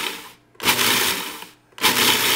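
Food processor pulsed in bursts of about a second with two short pauses, its blade whirring through cornflakes as it grinds them down to a fine, sandy crumb.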